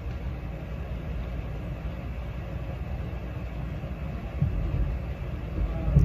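Steady low rumble of room background noise, with no speech over it.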